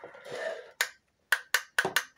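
Sharp clicks, about five in quick succession in the second half, from the test push-button of an exit sign and emergency light combo being pressed over and over; the button is not working.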